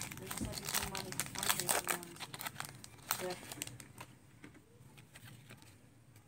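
Foil booster pack of Pokémon cards crinkling and tearing as it is opened by hand: a dense run of sharp crackles over the first three seconds, then softer rustling as the cards are handled.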